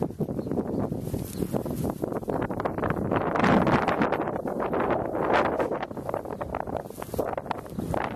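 Wind buffeting the microphone, a rough rumbling noise that gusts louder about midway.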